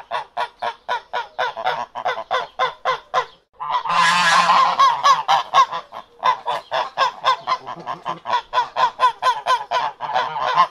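A flock of mallard ducks quacking, a fast run of calls at about five a second. A little over three seconds in the calls break off briefly, then many birds call at once for about a second before the steady run picks up again.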